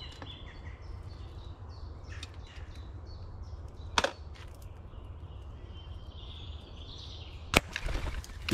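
An air rifle shot near the end: one sharp crack, the loudest sound here, as a grey squirrel feeding on the platform is hit and drops. About halfway there is a single shorter click, with small birds chirping faintly over a steady low background.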